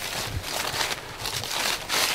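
Footsteps crunching and rustling through dry fallen leaves, an irregular crackle.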